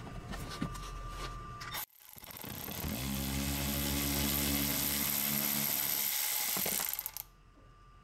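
Milwaukee cordless ratchet running for about four seconds to back out a 10 mm bumper-to-fender bolt. Its motor whine holds a steady pitch, then stops.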